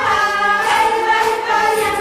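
A choir singing, several voices holding long notes together.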